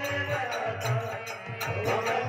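Harmonium playing sustained chords and melody in a devotional bhajan, with a hand drum and small hand cymbals (manjira) keeping a steady, even beat.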